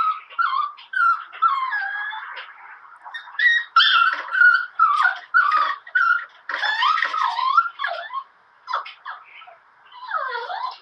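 A dog whining in a string of short, high, wavering cries that thin out near the end.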